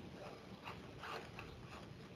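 Faint, scattered small clicks over quiet room tone.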